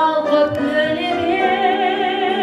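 A woman singing long held notes with vibrato into a microphone, over grand piano accompaniment.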